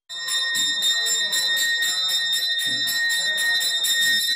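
Brass temple hand bell rung continuously in quick, even strokes during the aarti. Its bright, high ringing tone is held throughout.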